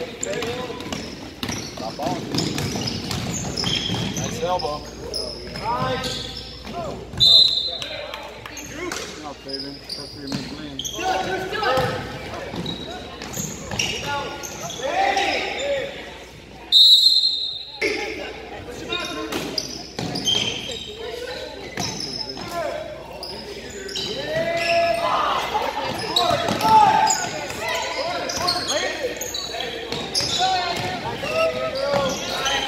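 Basketball dribbled and bouncing on a hardwood gym floor, with indistinct voices of players and spectators echoing in the large hall. Two short, loud referee whistle blasts sound, about seven seconds in and again at about seventeen seconds.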